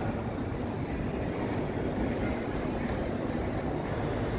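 Steady low background rumble of road traffic, with no distinct event standing out.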